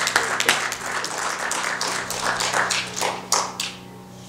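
Small congregation applauding with scattered handclaps that thin out and die away near the end, a low held keyboard note fading underneath.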